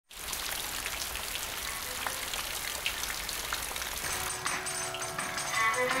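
Steady rain falling, with many individual drops ticking on a wet surface. Faint held tones come in over the last two seconds.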